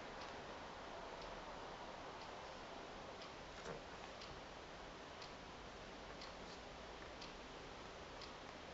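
A clock ticking faintly, about once a second, over steady room hiss, with one slightly louder click near the middle.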